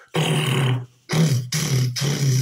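A man's voice imitating drums (vocal percussion), in three bursts, the last running on.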